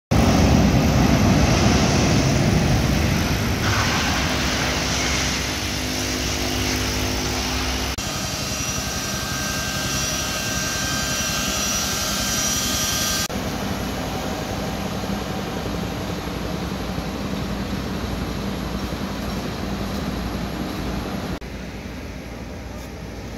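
Cargo jet's engines running as it moves on the runway and apron. The sound is loudest in the first few seconds. After a cut it becomes a steady high whine, and after another cut a quieter, even rumble.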